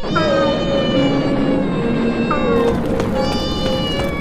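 Drawn-out cat meows set over background music, two long meows each starting with a falling bend in pitch.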